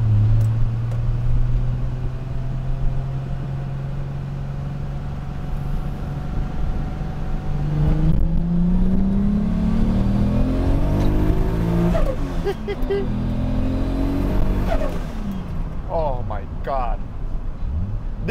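Toyota Supra's turbocharged straight-six heard from inside the cabin. It drones steadily at low revs for about eight seconds, then revs up hard under acceleration, with a gear change about twelve seconds in and a second climb in pitch.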